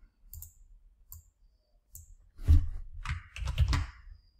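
Computer mouse clicking: a few light single clicks, then a louder run of clicks and knocks in the second half, as shapes are picked from a menu and drawn on screen.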